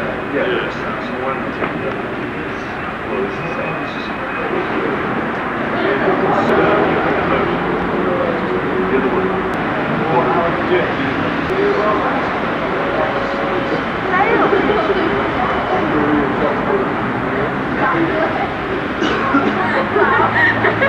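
Indistinct, overlapping talk of several voices, too muddled for words to be made out, over a steady background noise.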